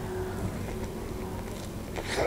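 A soft bite into a fried potato pirozhok, then quiet, muffled chewing over a steady low hum.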